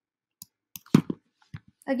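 A handful of short, sharp computer-mouse clicks, irregularly spaced, the loudest about a second in. A man's voice begins right at the end.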